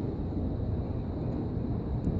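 Steady low rumble of wind buffeting the microphone outdoors, with no other distinct sound.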